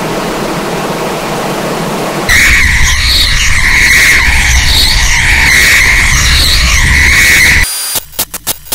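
Heavily distorted electronic audio: about two seconds of hissing noise, then a very loud, clipped squeal wavering around one high pitch over a low rumble, which cuts off suddenly near the end.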